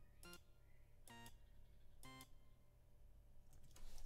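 Three short, faint synthesizer notes about a second apart, each at a different pitch: Reason's Thor synth on its initialized patch sounding each note as it is clicked into the piano roll.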